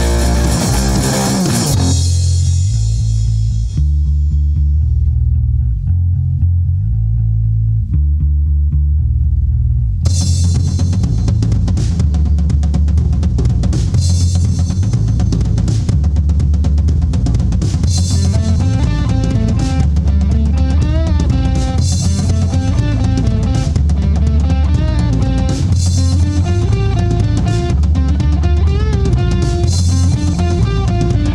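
Instrumental break of a rock song. The band drops out to a bass guitar playing alone for about eight seconds, then drums, cymbals and electric guitars come back in, with a lead guitar melody over them in the second half.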